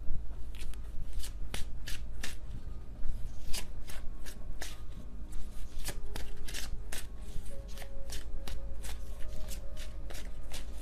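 A tarot deck being shuffled by hand: a continuous run of crisp card riffles and slaps, a few a second.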